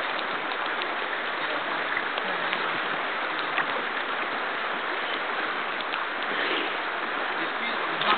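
Shallow creek water running over a gravel riffle: a steady, even rush, with a few faint ticks.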